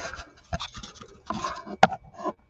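Handling noise from a camera being gripped and fitted into a tripod mount: rubbing and scraping right on the microphone, with a sharp click near the end.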